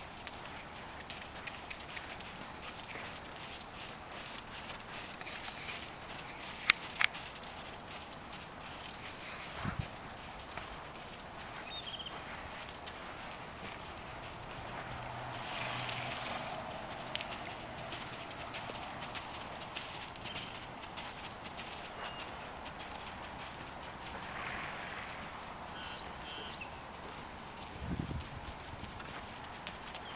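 Hoofbeats of a saddled horse moving at a walk and jog on sand arena footing, a run of soft regular thuds, with two sharp clicks about seven seconds in.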